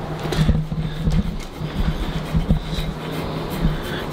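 Stainless-steel soft-tissue scraping tool rubbing over lotioned skin on a forearm, with scattered knocks as the arm is handled, over a steady low hum.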